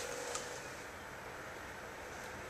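Steady, low background hiss with one faint click about a third of a second in.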